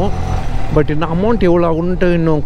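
A voice talking over the steady low rumble of a motorcycle ride, the talk starting a little under a second in.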